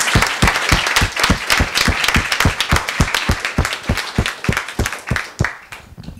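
Room applause: many people clapping, with one clapper standing out in a steady run of about five claps a second. The applause dies away shortly before the end.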